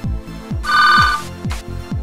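A telephone ringing once, a short burst of about half a second starting about half a second in, over background electronic music with a steady beat of about two thumps a second.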